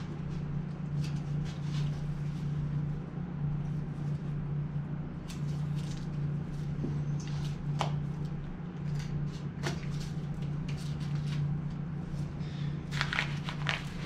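Scattered soft clicks and taps from a knife and gloved hands working an elk hindquarter on a cutting table, over a steady low hum.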